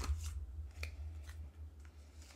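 Stampin' Up Banners Pick a Punch being handled while a cardstock strip is slid into its three-quarter-inch groove: a few light clicks and paper rubbing over a low rumble from the punch moving on the work surface.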